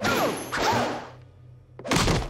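Cartoon slapstick sound effects: a sudden crash as two people are clobbered with a fish, with a laugh and falling tones through the first second, then another thud near the end as they hit the floor.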